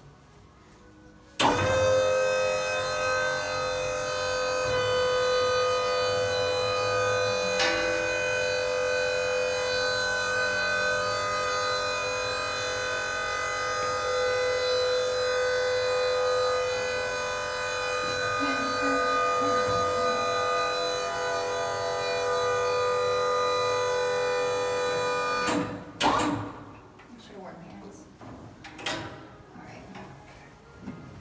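Motor of a casket lift running with a steady whine as it raises the platform and casket toward a crypt. It starts suddenly about a second and a half in and cuts off abruptly near the end, followed by a couple of sharp clicks.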